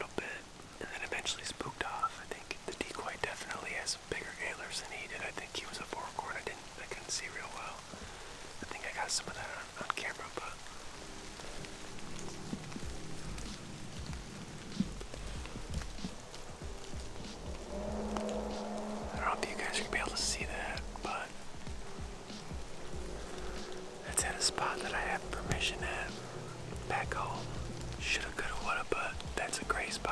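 A man whispering, with soft background music joining in about halfway through.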